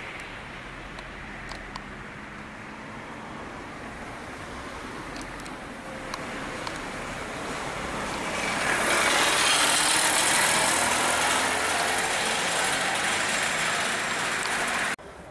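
Road traffic noise, a steady hiss and rumble that swells louder about eight seconds in and stays up.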